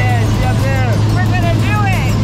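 Steady drone of a small propeller plane's engine heard from inside the cabin, with voices and a woman's laughter over it.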